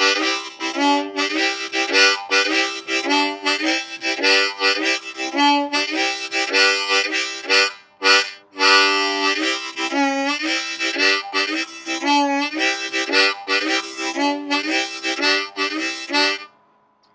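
10-hole diatonic harmonica in the key of C playing the 'train whistle' chord rhythm: drawn chords on holes 1-2-3 and 1-2 alternating with blown chords on holes 1-2-3, doubled up into quick, even pulses, with a short break about halfway.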